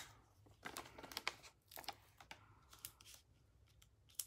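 Faint peeling and rustling of adhesive foam dimensionals being pulled off their backing sheet and pressed onto a cardstock panel, a few short crackles spread over the first three seconds.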